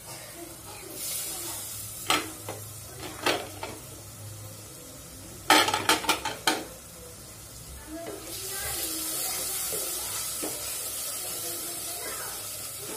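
Steel cookware clanking, with a few sharp knocks and then a quick run of clatters about halfway through. From about eight seconds in, a steady sizzle of curry frying in a steel pot on a gas burner takes over.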